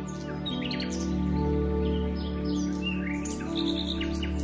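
Calm, slow ambient music with long held chords, mixed with many songbirds chirping and trilling in short phrases.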